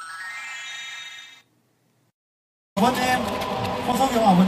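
A brief faint sustained tone, then about a second of dead silence from an edit cut. About three seconds in, live concert audio begins: a man talking into a microphone over the stage sound system, with a steady noisy background.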